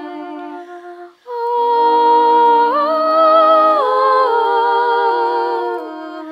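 Unaccompanied voices humming a slow, hymn-like melody in harmony, long held notes moving in steps, with a short break about a second in.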